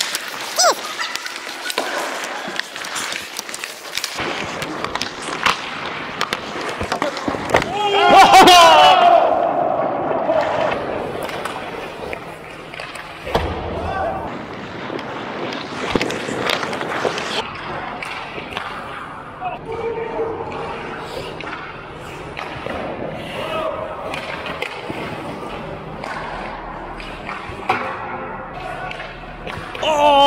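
Ice hockey play heard from the goal: skate blades scraping the ice and sticks and puck clacking in many sharp knocks. A loud shout comes about eight seconds in, with scattered voices of players around it.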